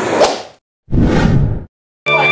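Whoosh transition sound effect added in editing: a sharp swish that fades out, a brief dead silence, then a second swoosh of under a second that fades away.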